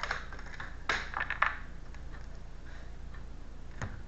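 A deck of tarot cards being shuffled by hand: a quick cluster of card clicks and snaps about a second in, then a single click near the end.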